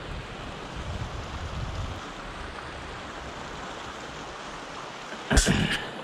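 Steady rushing of a small mountain river's flowing water, with a low rumble of wind on the microphone in the first couple of seconds. A brief loud noise comes about five seconds in.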